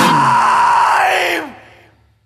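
The final held note of a screamo song, a sustained yelled voice with the last ringing sound of the band. It slides down in pitch and fades out to silence about a second and a half in.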